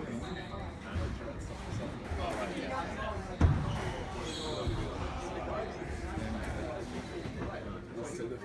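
Squash rally: the ball is struck by the rackets and smacks off the court walls, a string of sharp hits with the loudest about three and a half seconds in.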